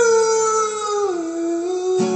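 A man's voice holding one long sung note that slides down in pitch about a second in and holds at the lower note, with an acoustic guitar strum right at the end.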